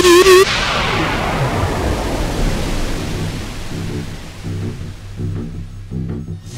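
Dubstep electronic music: a wobbling synth line cuts off about half a second in, giving way to a fading wash of noise, and a low pulsing bass pattern comes back in about four seconds in.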